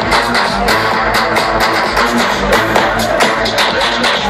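Loud electronic dance music from a live DJ set, played over a festival sound system, with a steady kick-drum beat.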